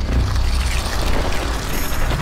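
Cinematic logo-reveal sound effect: a loud, dense low rumble with mechanical clanking and grinding, like gears and metal parts moving.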